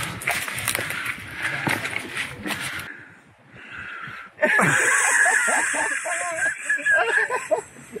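Scuffing and rustling of someone climbing up a ladder out of a bunker hatch, with scattered knocks. After a short lull about halfway through, indistinct voices.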